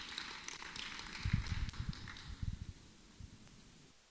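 Congregation clapping, fading away over the first two seconds or so. A run of low thumps comes about a second in.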